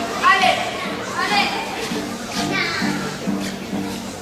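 Children's high voices calling out in a large sports hall, three calls in the first three seconds. Background music with short repeated notes comes in about halfway through.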